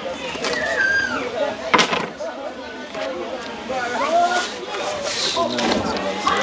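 Voices talking throughout, with a sharp knock about two seconds in. Near the end comes a short rushing hiss as dry jasmine rice is poured into a stainless steel bowl.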